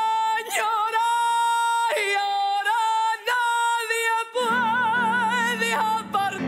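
A woman singing live, holding long high notes at the song's closing climax, stepping between pitches and ending in a wide vibrato. A lower instrumental accompaniment comes in underneath about four and a half seconds in.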